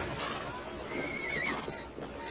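A horse whinnying once, a short wavering high call about a second in, over the mixed voices and noise of a large crowd on the move.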